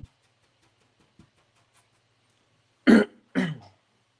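A man coughs twice in quick succession, about three seconds in.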